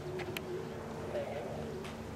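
A bird cooing in low, steady notes, with faint voices and a few sharp clicks.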